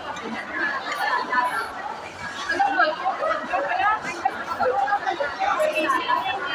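Only speech: people talking over one another in a café, with no other sound standing out.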